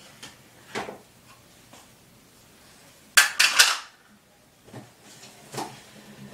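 Handling noise from a plastic curling iron being worked in the hair: a few light clicks, and a short loud clatter of three or four strikes a little after three seconds in.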